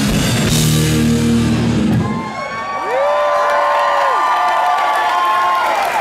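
A live hard-rock band (drums, distorted electric guitar, bass) plays the final bars of a song, which stop about two seconds in. The crowd then cheers loudly, with long held whoops and whistles that rise, hold and fall.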